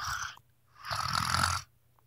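A person making two pretend snores, a short one at the start and a longer, raspier one about a second in.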